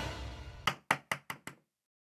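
Five quick knocks on a louvered wooden door, about five a second, as background music fades out.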